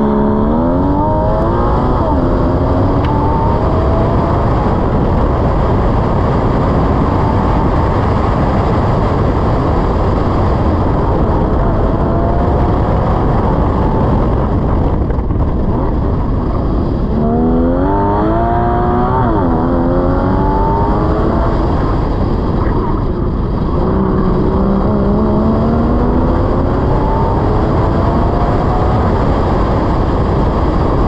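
2015 Porsche Cayman GTS's mid-mounted 3.4-litre flat-six accelerating hard from the start line, its note climbing through the revs, then rising and falling again in two more long pulls. A heavy rush of wind and tyre noise runs under it.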